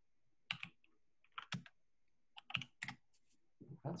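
Computer keyboard keystrokes in a few short runs with pauses between them, as a command is typed at a terminal.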